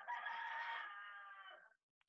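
A single faint, drawn-out animal call: one pitched cry lasting about a second and a half, holding steady and then fading out.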